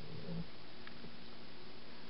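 Quiet, steady room tone: an even hiss with a faint low hum, from the church's sound system or recording chain.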